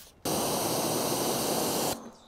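A steady hiss of water spray from a hose striking the car's painted bodywork and rinsing it down. It starts abruptly just after the start, holds level, and cuts off just before the end.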